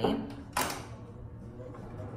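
A grooming dryer's power switch clicks once, sharply, about half a second in, followed by a faint low steady hum.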